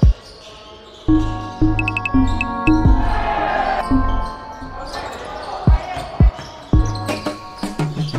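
A basketball bouncing on a wooden gym floor, a few single sharp thumps in the second half, over background music with a steady low beat.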